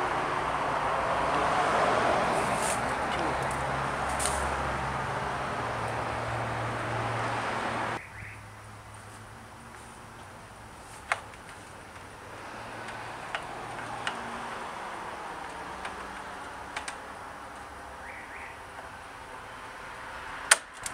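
Steady vehicle engine and traffic noise with a low hum for about eight seconds, which cuts off suddenly. Quieter outdoor background follows, with a handful of sharp clicks.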